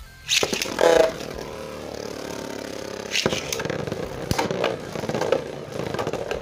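Two Beyblade spinning tops launched into a plastic stadium, with a loud rip of the launch in the first second, then spinning against the stadium floor in a steady scrape and whir. Sharp clacks come as the tops collide, about three and four seconds in.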